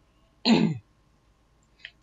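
A woman clearing her throat once, briefly, about half a second in, the pitch dropping as it ends; otherwise near silence.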